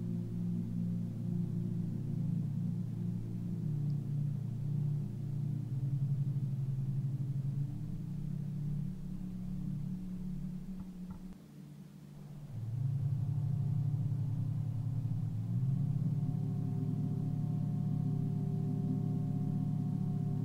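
Low, sustained meditation drone music of held, overlapping tones. It thins out and dips briefly just past halfway, then swells back up.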